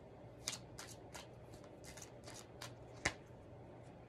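A deck of tarot cards being handled and shuffled by hand: a string of soft, quick card clicks, the loudest one about three seconds in.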